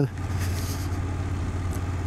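2024 BMW F800 GS parallel-twin engine running at a steady low drone while the bike cruises in third gear, mixed with steady wind and road noise.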